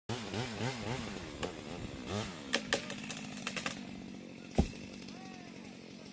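A chainsaw engine revved up and down in quick throttle blips, then dropping back to a steady run, with a few sharp knocks and one louder thump.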